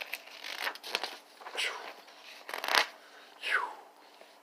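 Thin Bible pages being leafed through by hand: a series of about six short paper rustles and swishes.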